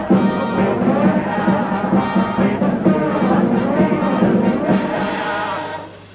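A studio band playing a lively show tune during a song-and-dance number. The music dies away near the end.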